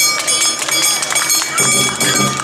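Awa odori street-dance band: a clanging kane hand gong giving ringing high metallic tones and rapid sharp percussive strikes, mixed with shouted voices; a fuller, lower layer of music comes in about one and a half seconds in.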